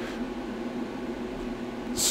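Steady background hum with a fan-like hiss, even throughout with no sudden sounds.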